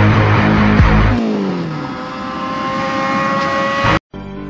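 Loud background music with a heavy beat, giving way about a second in to a small motorcycle engine whose pitch falls, then runs steady with a slow rise as it pulls away.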